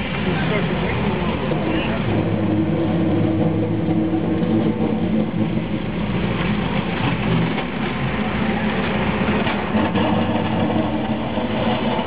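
Street traffic heard from inside a vehicle: engines running steadily, with a louder engine drone for a few seconds in the middle of the clip.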